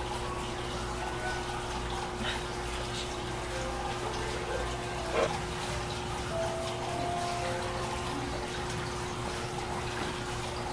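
Steady running, trickling water, like a tap or basin filling, with faint soft music and a low steady hum underneath.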